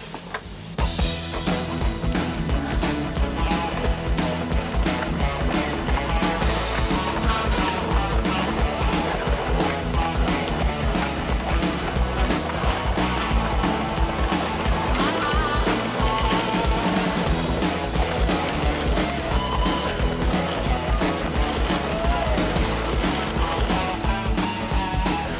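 Soundtrack rock music with a steady, driving drum beat that starts suddenly about a second in.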